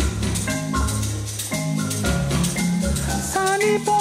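Playback of a multitrack song arrangement, all tracks unmuted, over the hall's speakers: a steady bass and percussion loop with short pitched notes. Strong held notes come in about three seconds in.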